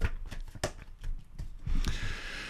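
Tarot cards being shuffled and handled, a few short irregular slaps and clicks of card on card.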